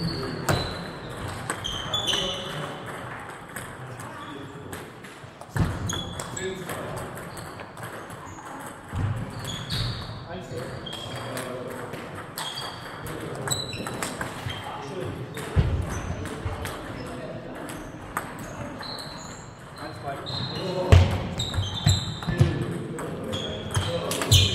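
Table tennis play: a celluloid/plastic ball clicking off the table and the players' rubber-covered bats in irregular rallies, including a quick run of loud hits about three-quarters of the way through. Background voices from the hall are also heard.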